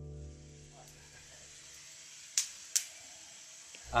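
Wood fire burning with a faint hiss and two sharp crackling pops close together, a little past halfway.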